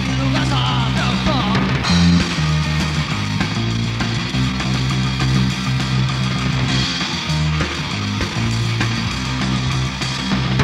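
A punk rock band playing live: distorted electric guitar over bass guitar and drums, at a steady loud level, with the bass notes changing every second or so.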